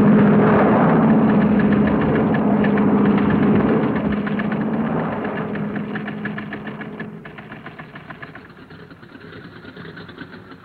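Piston-engined airliner in flight, its engines giving a steady drone with a fast clatter running through it. The drone fades away over the second half.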